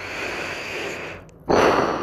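A man's breathing close to the microphone: a long breath with no voice in it, then a louder, sharper breath starting about one and a half seconds in.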